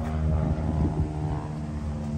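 A motor running at a steady, unchanging pitch, a constant drone.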